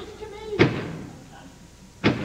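A door slamming shut about half a second in: one sharp bang that dies away over the following second.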